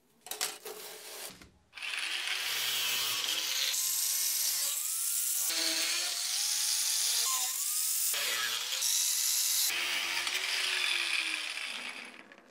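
Angle grinder with a thin cut-off disc cutting through a metal rod clamped in a vise: a loud steady grinding whine whose pitch sags and recovers as the disc bites, broken off and resumed several times. A brief clatter comes just before the cutting starts.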